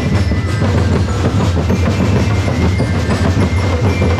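A street drum group playing massed drums in a fast, continuous beat, loud and dense, with a heavy low booming under rapid strikes.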